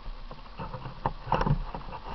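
Hands handling a 1:8 scale RC car carrying an onboard camera: irregular knocks, taps and rubbing on the body shell close to the camera, loudest from about a second in.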